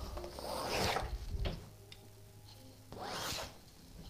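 Black pencils, two held in each hand, scraping across a stretched canvas in two long sweeping strokes, the second shorter, about a second and a half after the first.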